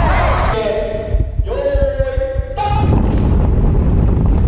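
Group of kendo practitioners shouting during unison sword-swing drills, with a few long, held shouts in the middle, over repeated thuds of bare feet on a wooden gym floor, echoing in a large hall.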